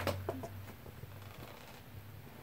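A few light clicks of small plastic medication parts being handled in the first half second, then a quiet room with a low steady hum.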